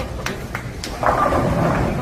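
Bowling ball rolling down the lane with a low rumble, then pins crashing, a burst of clatter about a second in. Sharp knocks from other lanes sound over it.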